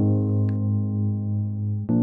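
Background music of slow, sustained chords, with a new chord coming in at the start and another near the end.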